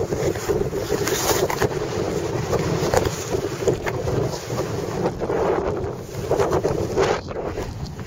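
Wind rushing over the microphone of a camera carried in flight, a loud continuous roar that swells and eases in gusts.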